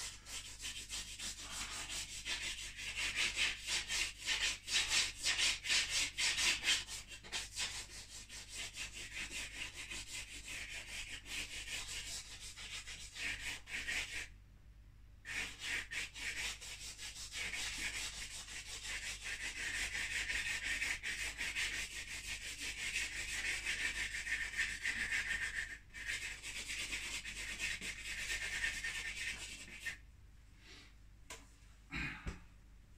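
Rapid rubbing and scratching strokes of an art medium worked across paper, denser and louder at first. They stop briefly about halfway through, then go on as smoother, steadier strokes.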